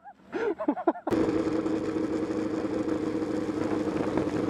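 A sport motorcycle, a Suzuki GSX-R600, ridden at a steady speed: its engine holds an even hum at steady revs under a constant rush of wind noise. It starts suddenly about a second in, after a brief voice.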